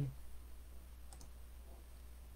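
Quiet room tone with a steady low hum, and two faint clicks close together about a second in.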